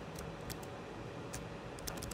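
A few faint, short clicks over low room tone, the last two close together near the end: computer mouse and keyboard clicks as someone works at a Mac.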